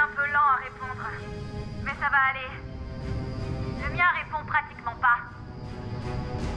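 Film soundtrack: a man's voice in three short bursts of speech over background music with a steady low rumble.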